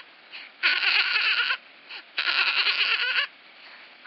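High-pitched dolphin chattering: three bursts of about a second each, each a fast rattling squeak, with short pauses between them.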